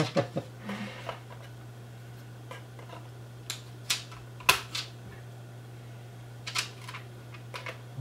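A laptop memory module being handled and pushed into its slot on a Lenovo ThinkPad T460 motherboard: a few scattered clicks and taps, the sharpest about halfway through, over a steady low hum.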